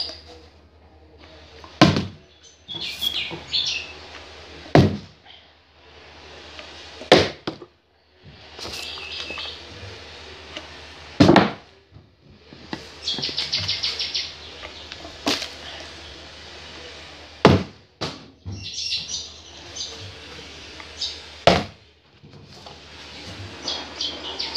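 A partly filled plastic water bottle being flipped and landing or falling on a table over and over, each attempt ending in a sharp thud, about seven times a few seconds apart. Short bird chirps sound between the thuds.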